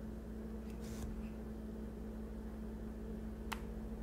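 Steady low electrical hum of room background, with two faint brief clicks, one about a second in and one near the end.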